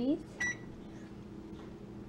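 A single brief high blip like an electronic beep about half a second in, over a faint steady low hum.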